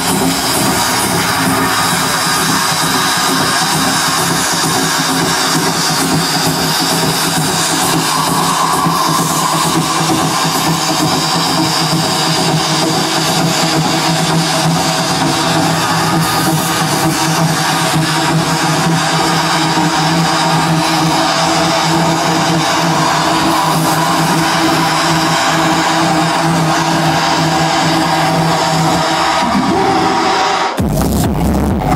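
Electronic dance music from a DJ set, played loud over a stage sound system, with steady held tones throughout.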